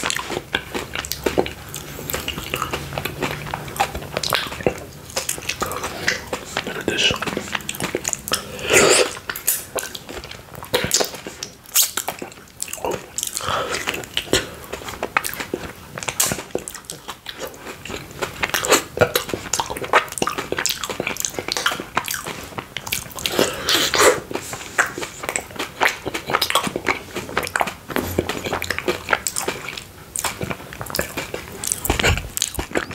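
Close-miked eating of a cookie-dough mochi ice cream ball with chocolate filling: biting and chewing, with irregular sticky mouth and lip clicks.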